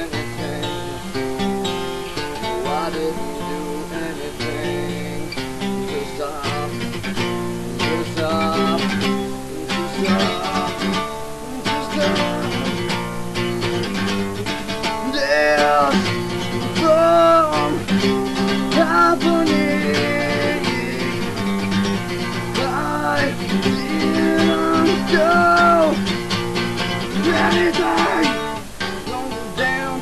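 Acoustic guitar played solo, strummed and picked chords carrying the song along without words.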